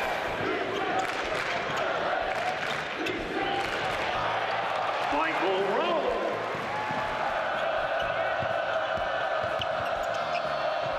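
Live game sound of a basketball game on a hardwood court: a ball dribbling and bouncing with scattered short knocks, over a steady arena hubbub of voices.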